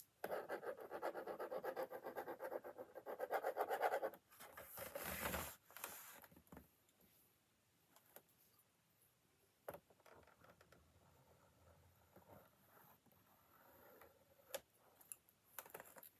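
Marker scribbling rapidly on a drawing board: a dense scratching for about the first four seconds, then a short rustle and faint scattered strokes and taps.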